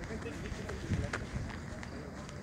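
Indistinct voices in the background, with a dull thump about a second in and a few sharp clicks spaced roughly half a second apart.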